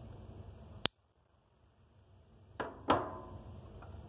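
Black-handled switchblade knife being handled: one sharp click a little under a second in, then two metallic clicks with a brief ringing about two and a half to three seconds in, the second the loudest, and a faint click near the end.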